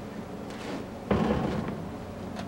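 MIG welder striking a short weld on the truck's steel frame: a sudden crackling burst about a second in, lasting about half a second, over a steady low hum.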